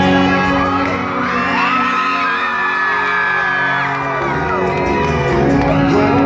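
Live band music heard from far back in a large concert crowd, with fans cheering and whooping over it, the cheering strongest through the middle.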